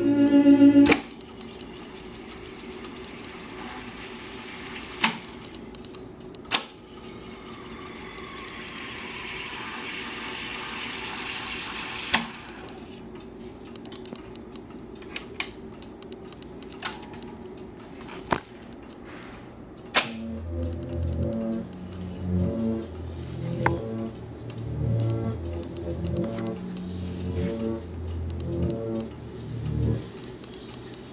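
Akai GX-280D SS reel-to-reel tape deck: music playback stops with a button press about a second in, then the transport runs with a steady hum and whir, broken by several sharp clicks of its transport buttons. About twenty seconds in, music plays back again with low, rhythmic bass notes.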